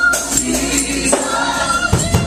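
Gospel choir singing, with a tambourine shaken and struck in rhythm.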